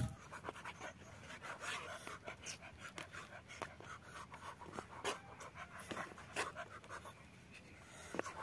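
Knife cutting raw chicken on a plastic cutting board: faint, irregular soft clicks as the blade goes through the meat and meets the board, roughly two a second.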